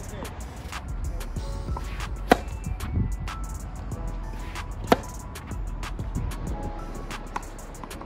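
Tennis balls struck by racquets during serves and rallies, each a sharp pop, the loudest about five seconds in and another a little after two seconds, over background music.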